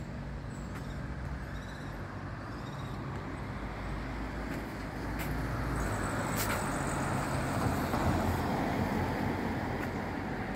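Road traffic noise: a steady low rumble, with a passing vehicle that swells from about halfway through and is loudest near the end.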